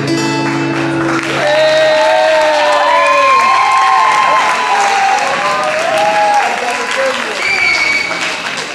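An acoustic guitar's final chord rings on and dies away in the first couple of seconds. An audience then applauds, with cheering voices over the clapping.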